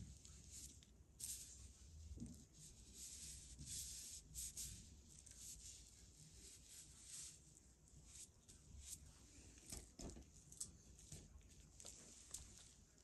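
Faint, irregular scratchy swishes of a bristle brush spreading glue over crinkled tissue paper on a board, with a few short clicks near the end.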